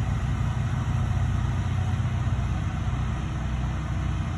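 A vehicle engine idling, a steady low rumble.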